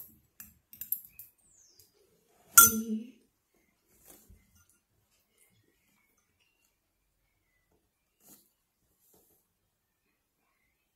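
A metal spoon clinking against a dish while eating: a few light clinks in the first second, then one loud clink about two and a half seconds in.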